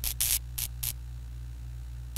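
Neon sign tubes flickering on: a steady electrical mains hum with three short crackles of static in the first second, then only the hum.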